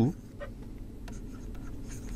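Faint scratching and light taps of a stylus writing a letter on a pen tablet, over a low steady room hum.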